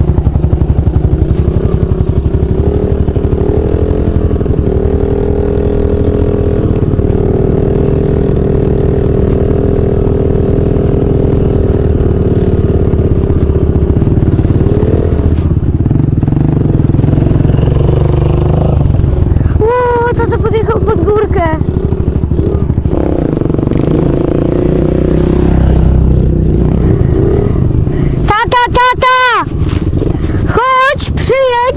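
Dirt bike engine running hard as the bike is ridden over a rough dirt track, its pitch rising and falling with the throttle. Near the end the sound wobbles quickly up and down in pitch.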